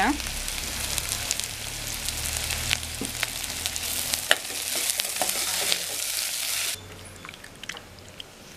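Small onions, green chillies and curry leaves sizzling in hot oil in a metal pot, stirred with a ladle that clicks against the pot now and then. The sizzle cuts off suddenly near the end, leaving a much quieter stretch.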